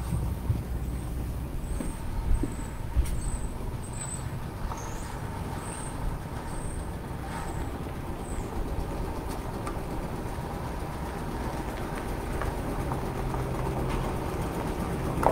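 Steady low rumble of vehicle engines idling in a parking lot, with a few light knocks.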